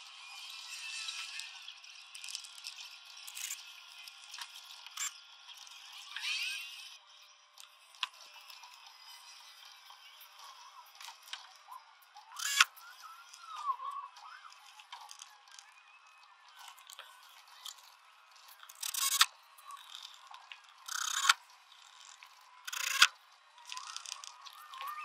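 Faint handling noise of a headliner trim strip being worked into place in a light-aircraft cabin: scraping and rattling of the trim against the ceiling panel, with several sharp snaps in the second half as it is pressed home.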